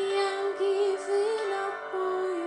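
A singer in a slow ballad, a run of several held, slightly wavering notes over a soft instrumental accompaniment.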